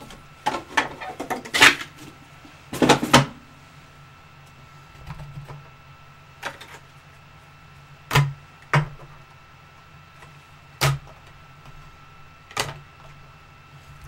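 A quick run of knocks and rustles as a cardboard card box and cards are slid and set down on a table, then a handful of single sharp clicks a second or two apart, over a faint steady hum.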